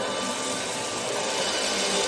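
A rising whoosh of noise that swells steadily louder, over faint background music.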